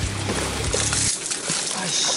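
A hooked peacock bass thrashing and splashing at the water's surface near the bank, the splashing loudest in the second half. Background music plays under it and cuts off about halfway through.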